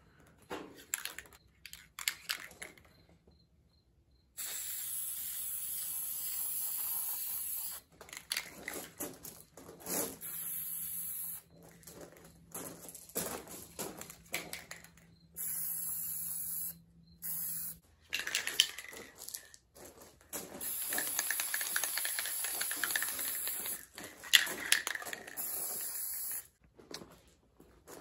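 Aerosol spray-paint can spraying blue paint onto an RC car wing in long hissing bursts, several seconds each with short breaks between them, after a few clicks at the start.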